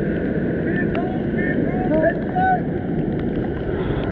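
Steady rushing of breaking surf and wind buffeting the microphone, with short calls from voices heard faintly over it.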